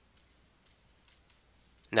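Faint scratching of a pen writing in short strokes, then a man's voice starting to speak at the very end.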